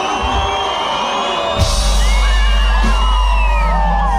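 Concert crowd screaming and whooping; about a second and a half in, a loud, sustained deep bass from the stage's sound system comes in under the cheers.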